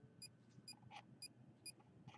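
Handheld RF/EMF meter beeping faintly: short high-pitched beeps repeating about twice a second, its audible alert for the field reading.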